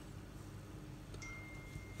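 Quiet room tone with a low steady hum. A faint, thin, high-pitched steady tone starts a little past halfway and holds to the end.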